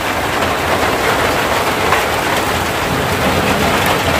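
Steady rain falling on the water of a fish pond: a dense, even hiss.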